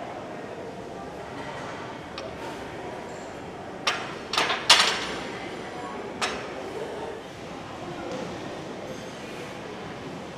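Steel barbell clanking onto the squat rack's hooks: a quick cluster of metallic knocks about four seconds in and one more a second or so later, over gym room noise and faint voices.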